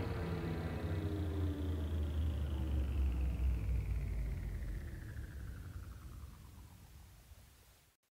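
Closing seconds of a techno DJ mix: a low bass drone under a falling whoosh that sweeps steadily downward, with no beat, fading out to silence just before the end.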